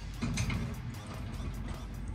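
Steel tube bars of a cargo roof basket shaken by hand, a few light metal rattles near the start from a loose, unbolted joint between the basket's sections.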